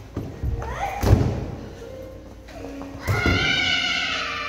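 A thump about a second in, then a child's high-pitched shriek near the end, held and falling slightly in pitch.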